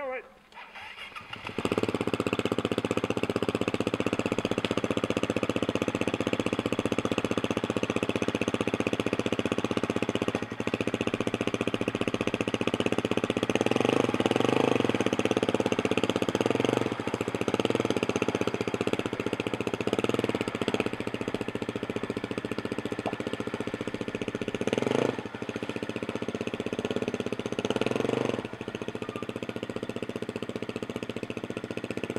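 KTM enduro dirt bike engine starting about a second and a half in, then running as the bike is ridden through shallow water, revving up in several surges.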